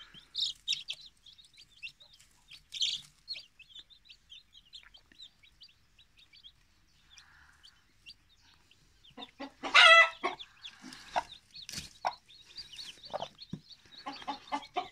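Newly hatched chicks peeping in short, high chirps under a broody hen. From about nine seconds in, the hen clucks loudly in a run of lower calls.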